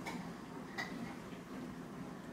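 A toddler eating cut orange pieces: a couple of short, wet clicks from chewing and from fingers handling the fruit on the plate.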